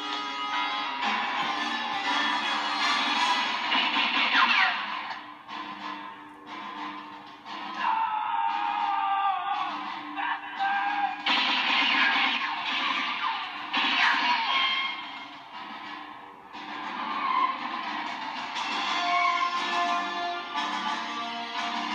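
Film score music playing from a television's speakers, rising and falling in swells. It sounds thin, with almost no deep bass.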